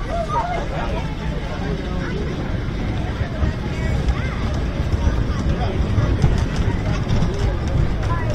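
Wooden roller coaster train rolling along the track into the station, its wheels making a steady low rumble that grows slightly louder. Several people's voices and chatter run over it.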